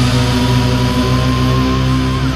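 Progressive metal music with no vocals: distorted electric guitars and bass holding a chord under one long, slightly wavering high note.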